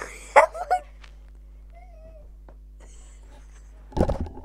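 A few short, high-pitched vocal calls in the first second, a faint brief whine about two seconds in, and a sudden thump right at the end.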